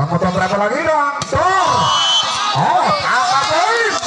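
A volleyball struck hard once, a single sharp smack about a second in, followed by voices calling out loudly as the rally ends.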